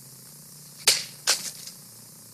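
A sword cutting through a watermelon on a cutting stand: a sharp smack about a second in, then a second impact less than half a second later as the melon splits apart.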